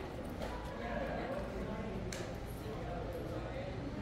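Indistinct chatter of people nearby, with a few footsteps on a hard path.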